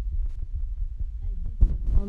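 A low, steady background rumble and hum in a short pause between words, with a soft knock a little over halfway through.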